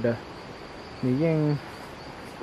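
Insects calling in a steady, high-pitched drone that runs on unbroken beneath a few spoken words.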